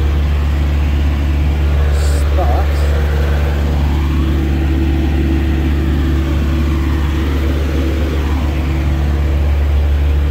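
Diesel semi-truck engine idling, a loud, steady low drone that does not change.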